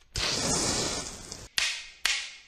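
Sound effects of an animated logo sting: a long swish lasting over a second, then a sharp, whip-like crack near the end.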